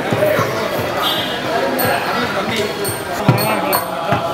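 Temple procession sounds: a crowd of voices with a few sharp low thuds, and high ringing tones that come in about two seconds in.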